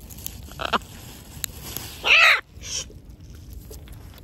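Macaws squawking as they squabble over food: a short call just over half a second in, then a loud, harsh squawk about two seconds in and a weaker one right after, with a few light clicks between.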